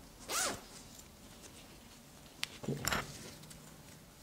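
Zipper on a fabric wallet slid briefly twice, once about half a second in and again near three seconds, with a small click just before the second pull.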